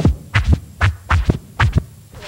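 Vinyl record being scratched on a DJ turntable: a quick run of short, sharp scratch strokes, about four a second, chopped off between each stroke.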